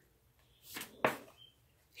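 A tarot card drawn from the deck by hand: a short swish, then a sharp card snap just after a second in.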